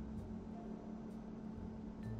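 A faint, steady low hum with light hiss, and no distinct handling sounds.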